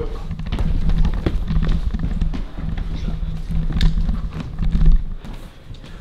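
Running footsteps thudding on a floor, with heavy handling knocks from a handheld camera jostled as the runner moves; the thumping stops about five seconds in.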